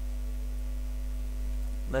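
Steady low electrical hum, with a few fainter steady higher tones above it.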